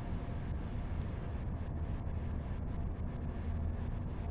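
Steady low rumble of background noise, with no distinct events.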